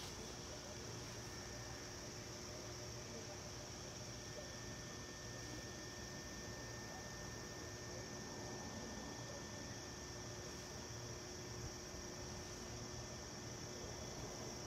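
Faint, steady outdoor background: a constant high hiss with a faint hum underneath, unchanging and with no distinct events.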